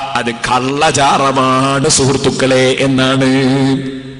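A man's voice chanting a devotional verse in a drawn-out, melodic style, holding long notes, and trailing off near the end.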